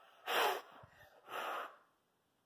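Children blowing out birthday candles on cupcakes: two short, breathy puffs of air, one about a quarter second in and another about a second later.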